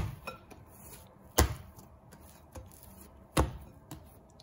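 Soft yeast dough being kneaded by hand in a glass bowl: sharp thumps as it is folded and pressed down, two loud ones about two seconds apart, with faint handling sounds between.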